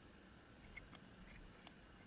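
Near silence: room tone with a few faint small clicks as a plastic model-kit part and a glue tube are handled.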